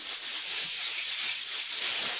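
Rune pieces rattling steadily as a hand stirs through them to draw the next omen.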